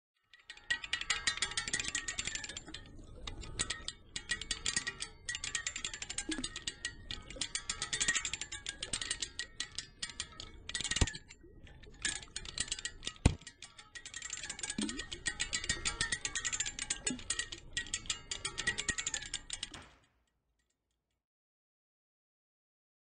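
A paddle wheel turning in river water: dense, rapid clicking and rattling of its metal paddle hinges and fittings mixed with water splashing. Two sharper knocks come near the middle, and the sound stops shortly before the end.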